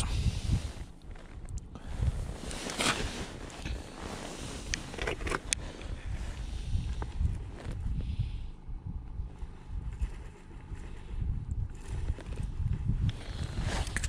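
Wind buffeting the microphone in uneven gusts, a low rumble, with rustling of clothing and a few brief handling clicks.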